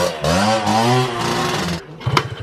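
Dirt bike engine revving, its pitch rising and falling, then dropping away shortly before the end.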